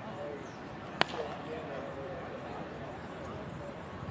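One sharp crack of a baseball impact about a second in, over faint chatter of voices in the background.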